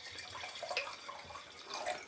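White wine poured from a glass bottle into a wine glass: a quiet, steady trickle of liquid splashing into the glass.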